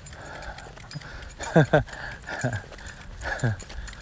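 A dog giving short whining groans that fall in pitch, about four of them in the second half, with light metallic clinking from the leash clip.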